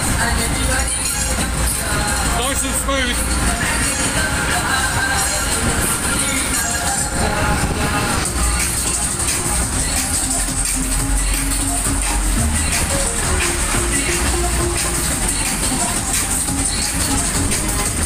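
Loud fairground music with a voice, played over a waltzer's sound system while the ride spins, with a steady low rumble underneath.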